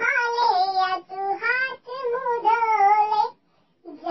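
A high-pitched, child-like voice singing a Hindi wake-up song, holding long wavering notes in phrases of about a second with short breaks between them.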